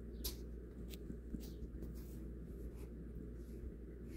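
Faint, irregular taps of typing on a phone's touchscreen keyboard, a handful of separate clicks, over a steady low hum.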